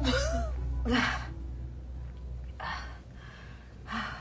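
A woman gasping and breathing heavily, four breaths in about four seconds, the first two the loudest, over low background music.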